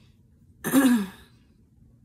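A woman clears her throat once, a short falling 'ahem' lasting about half a second, a little over half a second in.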